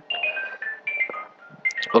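A simple electronic melody of short single beeping tones, about ten notes stepping up and down in pitch, like a mobile phone ringtone.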